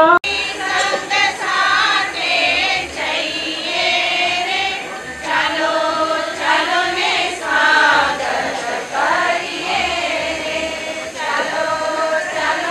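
A congregation chanting a Jain devotional prayer together, many voices in unison. There is a brief sharp break just after the start, then the chanting carries on.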